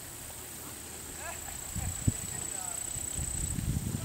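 A horse walking on an arena's sand footing, with soft hoofbeats and a single sharp knock about two seconds in. A steady high insect-like whine sits underneath.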